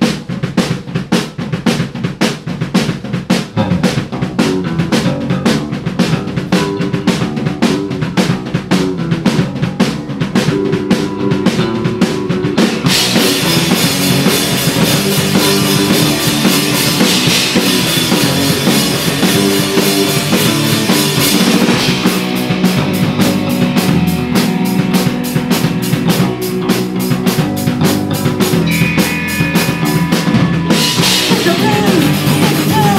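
Punk rock band playing live: drum kit beating about four hits a second under bass and electric guitars in a song's instrumental opening, the sound thickening with the full band about thirteen seconds in.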